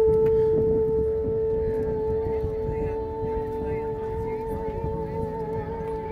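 A single steady tone held for the whole stretch, wavering slightly near the end, with fainter steady notes joining beneath it partway through.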